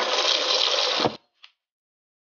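Tap water pouring onto vegetables in a plastic washbasin, steady, then cutting off suddenly about a second in.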